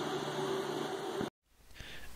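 Quiet room tone, a steady faint hiss with a low hum. It cuts to dead silence about a second and a quarter in, at an edit.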